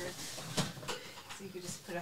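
Faint, low talk in a small room, with a single light click of something being handled about half a second in.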